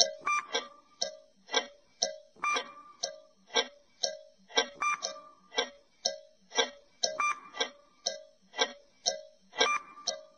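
Countdown-timer sound effect: a clock-style tick-tock at about two ticks a second, with a short beep-like tone coming back every two to three seconds, marking the time left to answer a quiz question.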